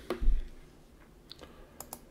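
A short low thump just after the start, then a few light clicks at a computer keyboard or mouse in a quiet room.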